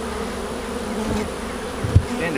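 A swarm of honeybees buzzing around the open hives, a steady, continuous hum. A short, dull thump just before the end.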